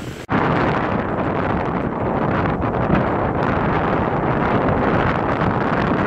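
Strong wind buffeting the microphone: a loud, steady rushing noise that starts abruptly just after the beginning.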